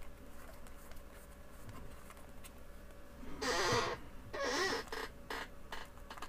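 Two short squeaky scrapes, each about half a second long, near the middle, followed by a few light clicks: small plastic kit parts being handled and fitted together on a workbench.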